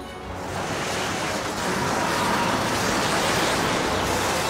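Cartoon sound effect of a summoned cyclone: a rushing wind that swells up over the first couple of seconds and then holds steady, over background music.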